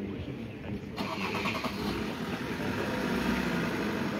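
A car engine running close by, coming in suddenly about a second in and then holding a steady low hum.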